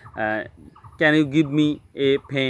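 A man's voice speaking Bengali in short phrases.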